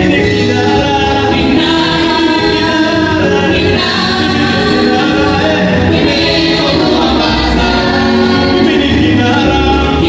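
Live Swahili gospel song: a mixed group of male and female singers singing together in harmony into microphones, holding long notes, with a low accompaniment underneath.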